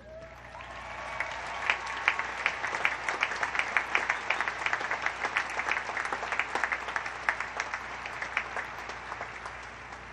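A large crowd of midshipmen and guests applauding: the clapping builds over the first second or so, then holds as a dense, steady mass of claps.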